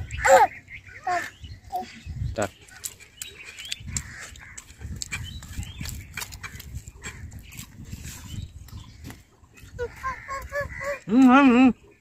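Small clicks and smacks of eating rice by hand and chewing. Near the end a person hums a long wavering "mmm" of enjoyment.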